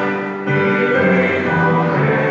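Choral music: voices singing held chords, the notes changing about half a second in.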